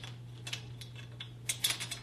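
Metal locking pin and its split ring clicking and jingling as the pin is pushed into the hole in a GPS tripod's center pole, locking the pole at its set height so it can't slip. A few light clicks, with a quick cluster near the end.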